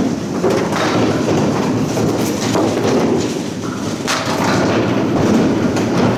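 Steady rumble of candlepin balls rolling on wooden lanes, with a few sharp knocks of balls and pins.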